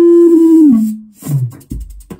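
Modular synthesizer sounding a loud, held, nearly pure tone that glides down in pitch under a second in and then stops. A short low falling note and a low thud follow near the end.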